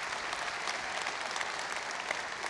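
A large congregation applauding: a steady clatter of many hands clapping.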